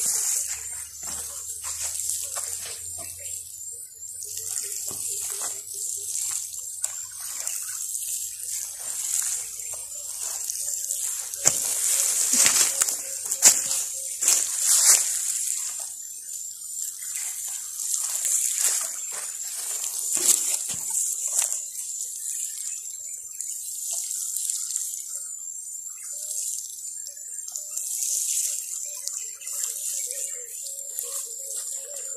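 Water spraying from the rose of a plastic watering can onto mulched soil beds, a steady pattering hiss that grows louder in the middle.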